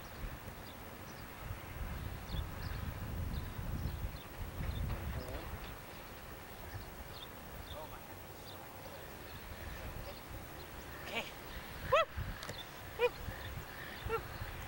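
Open-air ambience: a low rumble on the microphone for a few seconds, with scattered faint chirps, then short pitched voice sounds near the end, the two loudest about a second apart.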